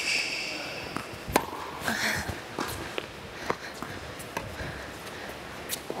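Tennis rally on an indoor hard court: sharp strikes of racket on ball and ball bounces come about once a second, echoing in the large hall. Right after the first hit comes a brief high squeak of a shoe on the court.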